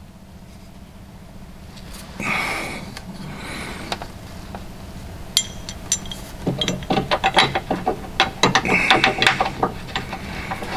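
Metal clicking and clinking as steel bolts and a jacking-rail bracket are handled and threaded by hand up into the underside of a car's chassis. A short scraping rustle comes about two seconds in, and a run of quick clicks and light knocks fills the second half.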